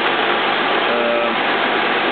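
Steady, loud machine-like noise with no rhythm or change, with a faint voice under it about a second in.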